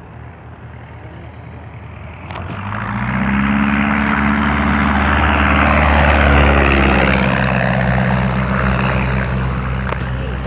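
A de Havilland Tiger Moth biplane's propeller-driven Gipsy Major piston engine flies in low and close. It grows loud about two and a half seconds in, is loudest around the middle, and its pitch dips slightly as it passes.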